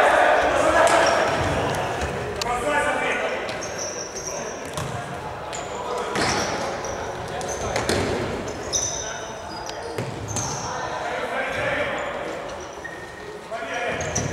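Futsal ball being kicked and bouncing on a hard sports-hall floor, with short high squeaks of players' shoes and players' shouts, all echoing in a large hall.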